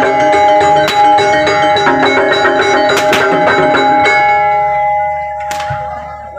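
Gamelan-style Javanese dance music: drums and ringing mallet percussion over held notes, with a few sharp strikes, fading away over the last two seconds.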